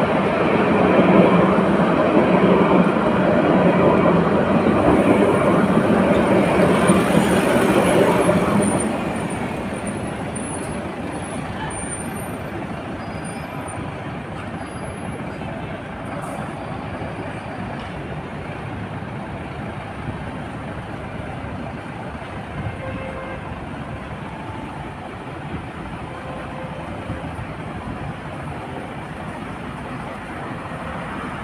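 Two Jerusalem Light Rail trams (Alstom Citadis) passing each other on the track, loud for about the first nine seconds and then falling away sharply. After that, a steady background of city traffic.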